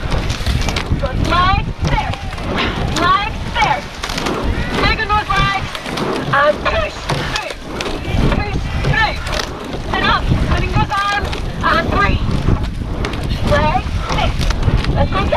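Repeated shouting voices urging the crew on, over wind buffeting the microphone.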